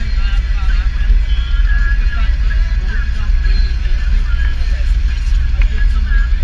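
Steady low rumble of a moving car heard from inside the cabin, with a song with singing playing over it.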